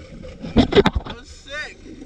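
Water splashing and a cluster of knocks against the boat's side as a wetsuited freediver hauls himself aboard from the sea, loudest from about half a second to a second in. A short burst of voice follows.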